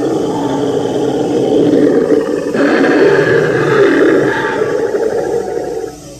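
Recorded dinosaur roar played at a life-size dinosaur model: one long, continuous roar that grows brighter about two and a half seconds in and cuts off near the end.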